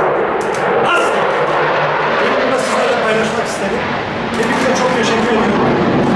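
A room of people applauding, with a man's voice carrying on under the noise and becoming clearer near the end.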